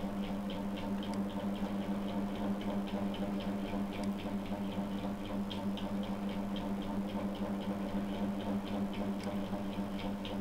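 A steady low hum with a fast, even ticking over it, about three ticks a second.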